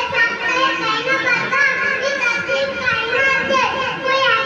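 A boy speaking through a microphone and loudspeaker in long, continuous declaimed phrases, as in a formal speech.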